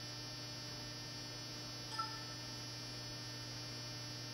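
Steady electrical mains hum, a low buzz with many overtones. A short faint tone sounds once about halfway through.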